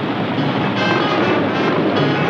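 Several motorcycle engines running together as a group of bikes rides in and gathers, mixed with background film music.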